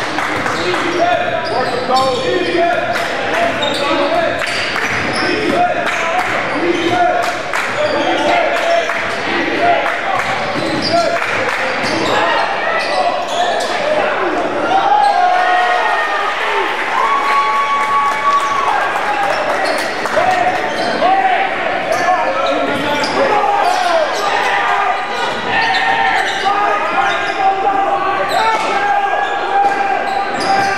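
A basketball dribbling on a hardwood gym floor during live play, with many short sharp strokes against a steady din of players and spectators calling out, echoing in the large gym.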